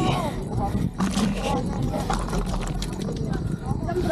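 Mountain bike rolling over a rough dirt trail, with a steady low rumble of wind on the camera microphone and small knocks and crunches from the tyres. A brief vocal sound comes right at the start.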